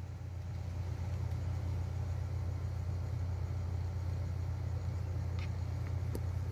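A steady low rumble or hum, with a faint hiss above it and a small click near the end.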